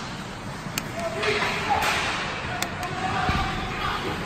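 Ice hockey play heard from rinkside: a steady hiss of skates on ice with a few sharp clacks of sticks and puck, and distant shouts from players and spectators.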